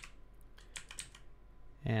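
A few scattered keystrokes on a computer keyboard, the first and loudest right at the start.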